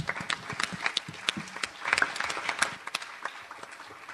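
Audience applauding with a dense patter of many hands clapping, which thins out and dies away near the end.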